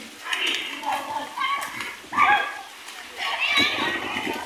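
Children's voices calling and shouting while they play in a swimming pool: five short, high-pitched cries spread over a few seconds.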